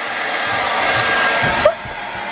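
Hair dryer blowing steadily while drying a wet dog; the blowing drops off sharply near the end.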